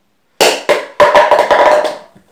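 A rapid run of loud, sharp knocks and clatter starting about half a second in, with a short ring after the hits.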